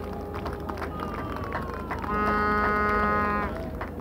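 A single steady horn-like tone, rich in overtones, starts about two seconds in and is held for about a second and a half over faint outdoor background noise.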